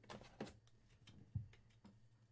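Faint handling of a clear hard-plastic card holder over a low steady hum: a few light clicks, then a soft knock about one and a half seconds in as it is set down on the table.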